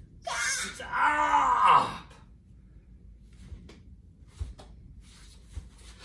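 A person's voice giving a drawn-out wailing cry for about two seconds, its pitch rising and then falling. After it come a few seconds of quiet with faint shuffles and a couple of soft thumps.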